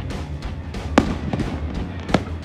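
A firework shell bursting with one sharp bang about a second in, followed by a few smaller pops. Music with a steady beat plays underneath.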